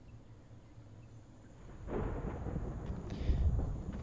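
Low thunder rumble in the animated episode's soundtrack. It rolls in about halfway through and swells toward the end.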